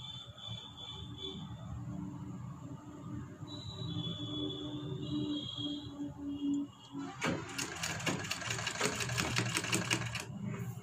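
A domestic sewing machine starts stitching about seven seconds in. It runs at a quick, even rate of about six needle strokes a second, sewing down the fabric pieces of a back-neck design. Before that there is only a low background hum.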